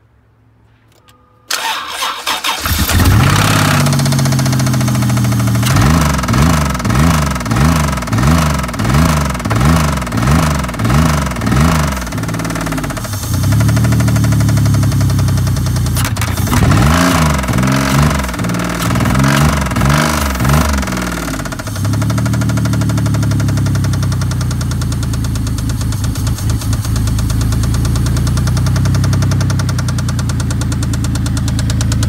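2005 Chrysler Pacifica V6 cold-starting after sitting a week: it catches about a second and a half in and runs with a heavy knock from a badly failing engine. Twice its speed rises and falls in quick regular waves, about three a couple of seconds, before it settles to a steady idle.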